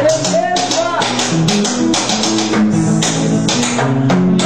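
Acoustic guitar playing a rhythmic accompaniment, with strummed strokes over a moving line of low notes.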